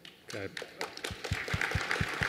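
Audience applause starting up and building from scattered claps into fuller clapping about a second in, with louder single claps from hands clapping against a handheld microphone.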